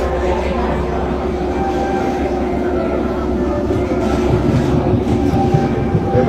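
Steady rolling mechanical rumble of a moving vehicle with a constant hum, growing rougher and louder in the last two seconds, with voices mixed in.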